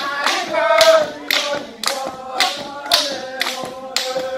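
A group of Ni-Vanuatu dancers singing a traditional chant together, with sharp claps marking a steady beat about twice a second.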